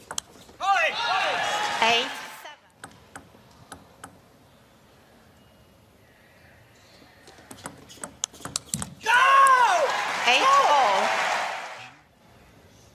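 Two loud bursts of shouting and cheering voices at a table tennis match, each lasting two to three seconds: one starting about half a second in, the other at about nine seconds, each after a point is won. In the quiet between them come the sharp clicks of the ball on bats and table, quickening into a rally just before the second burst.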